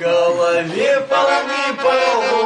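A man singing long drawn-out notes over a garmon (Russian button accordion) playing along.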